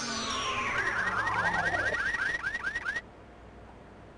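Electronic quiz-show jingle: synthesized tones sweeping downward, then a quick run of short rising chirps, about five a second, that cuts off suddenly about three seconds in. It is the show's cue for the last moment of the puzzle.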